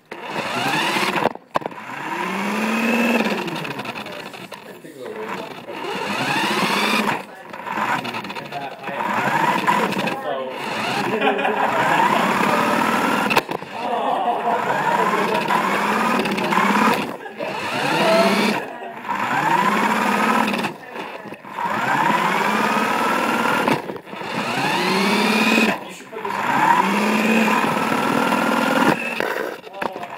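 Small electric motor and gears of a toy RC car whining in repeated surges as it speeds up and slows down. Each surge rises and then falls in pitch over a second or two, with short breaks between them.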